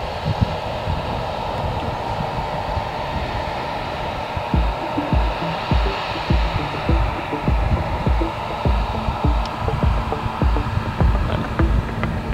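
New Holland CX combine harvester running steadily as it drives across the field, with irregular low thumps from about four seconds in.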